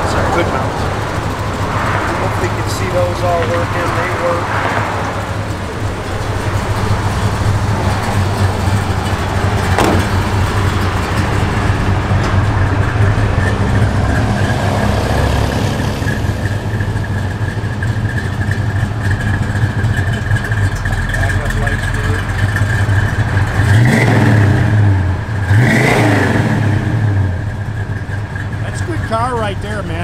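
1971 Plymouth GTX's 440 cubic-inch V8, with a mild camshaft and Flowmaster dual exhaust, idling with a little cam to it. Near the end it is revved briefly twice in quick succession.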